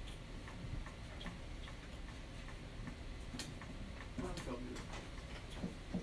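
Faint steady ticking, about two clicks a second, over low room noise, with a few quiet words near the end.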